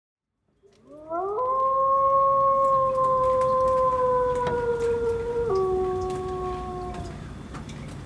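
A long howl-like tone that glides up at the start, holds steady, drops abruptly in pitch about five and a half seconds in, and fades out before the end.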